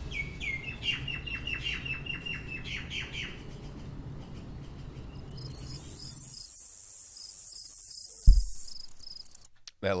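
Birds chirping in short falling calls over a low steady rumble, then a high-pitched hiss with about four quick ticks a second for about three seconds, with a low thud near its end before it cuts off. In headphones the noise is unpleasant.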